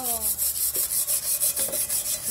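Metal cooking pot being scoured by hand with wood ash: rapid, even scrubbing strokes rasping against the pot's inside, several a second.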